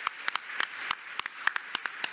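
Audience applauding, with individual hand claps heard unevenly rather than as a dense roar.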